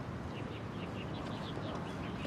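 Outdoor background ambience with a bird chirping, a quick run of short high chirps in the first second.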